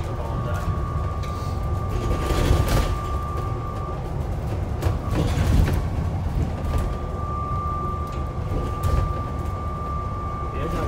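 Inside an Alexander Dennis Enviro400 MMC double-decker bus on the move: a steady engine and road rumble with a thin, steady whine that drops out for a few seconds midway, and a few brief knocks and rattles.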